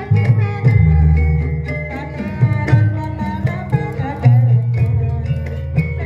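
Gamelan music accompanying a Javanese kuda lumping (horse trance) dance: a steady hand-drum rhythm over ringing pitched percussion, with deep sustained low tones.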